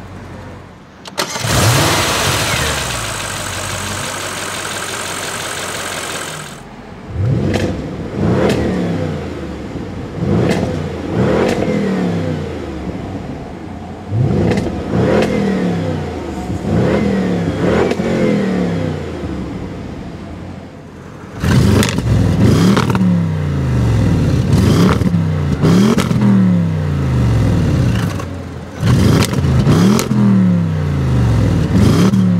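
Audi RS 7's 4.0-litre twin-turbo V8 revved with the car in Park. A loud, steady stretch in the first few seconds gives way to a series of quick throttle blips, each rising and falling away, and the blips from about 21 seconds in are the loudest.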